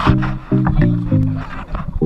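Background music: a pattern of short low chords changing about three times a second, with sharp ticks and higher sliding notes above.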